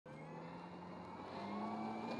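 Single-propeller electric drive of an F3A pattern plane (Dualsky XM6355 brushless outrunner) running with a steady whine. The whine rises gradually in pitch and loudness as the motor throttles up for the takeoff run.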